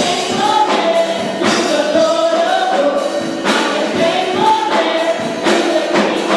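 A church praise team of men and women singing gospel music together through handheld microphones, holding long sung notes.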